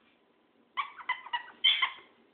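A small dog giving four short, high-pitched whines or yips, starting just under a second in; the last one is the loudest.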